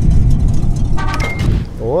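Produced transition sound effect under a channel logo: a loud, deep rumble that fades about a second and a half in, with a brief bright ringing tone just before it dies away.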